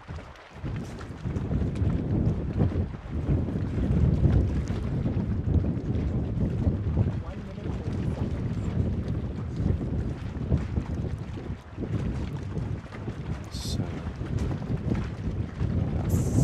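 Wind buffeting an outdoor microphone above open water: an uneven low rumble that swells and dips.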